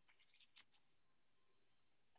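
Near silence, with a few very faint ticks in the first second.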